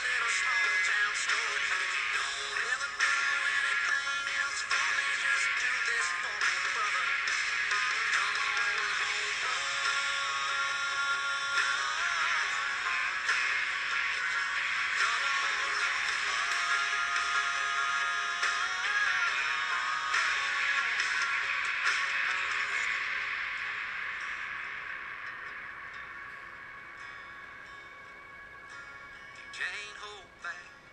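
Country song playing, with a thin sound and little bass, fading down over the last several seconds.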